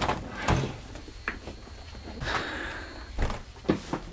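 A few light knocks and clunks from a heavy cast-iron turbocharger being handled on a desk mat, with a short rustle a little past the middle.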